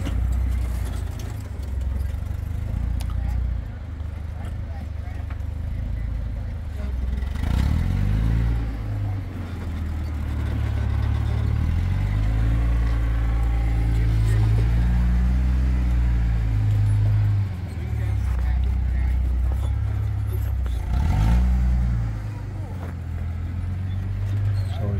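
Willys MB jeep's engine running at low revs while crawling over rock, with the revs picking up briefly about a third of the way in and again near the end.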